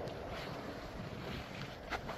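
Wind buffeting the microphone outdoors: a steady rushing noise with some rumble, and a short sharp click near the end.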